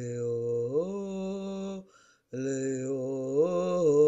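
Wordless, chant-like singing in long held notes that slide upward in pitch, broken by a short pause for breath about two seconds in.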